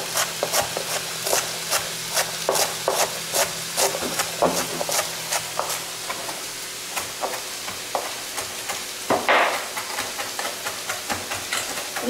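Chef's knife chopping fresh parsley on a plastic cutting board: a quick, slightly irregular run of blade taps, about three to four a second, with one louder, longer stroke about nine seconds in. Under it, mushrooms and peppers sizzle in a wok.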